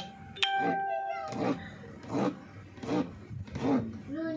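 Kitchen knife slicing through firm food onto a plastic cutting board, tapping roughly every three-quarters of a second. About half a second in there is a sharp click followed by a steady ringing tone lasting about a second.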